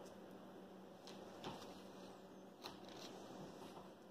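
Near silence, with a few faint clicks and rustles from hand-tying net webbing: twine and a netting needle being worked through the meshes over a wooden mesh board.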